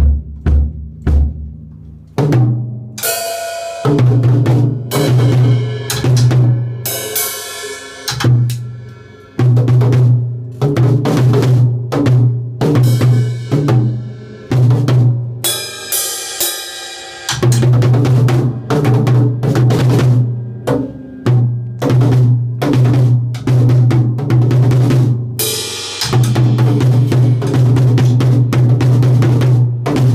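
A child plays an acoustic drum kit with sticks: loud, uneven, continuous hits on the drums with a ringing low drum tone. A Meinl cymbal crashes about three seconds in, again around the middle, and near twenty-six seconds.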